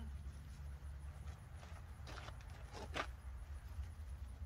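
Polyester fabric of a pop-up privacy tent's door rustling in a few short rasps as the rolled-up door is unhooked and let down, over a steady low rumble.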